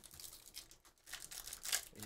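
Foil trading card pack crinkling as it is opened by hand: a quick run of small crackles that grows louder in the second half.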